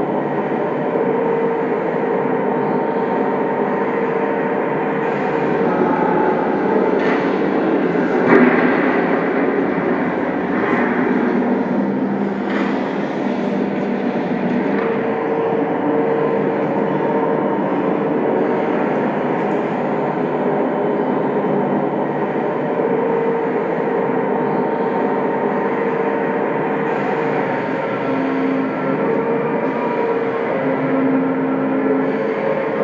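Steady, loud mechanical rumble with a droning hum running through it, like a train or heavy machinery, and a few clanks about a quarter to halfway through.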